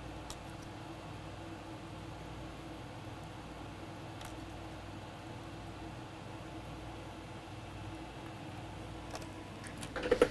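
Steady low hum of workbench equipment, with a few faint light clicks from small parts being handled: a couple early on and several close together near the end.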